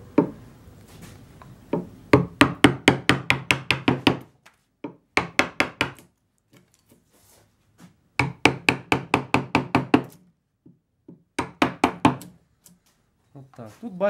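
Carving gouge being tapped into a lime-wood blank, sharp wooden knocks in quick runs of about five a second, broken by short pauses.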